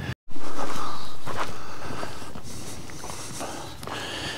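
Footsteps crunching on a stony dirt track, under a steady rushing noise that is loud at first and fades away over a few seconds.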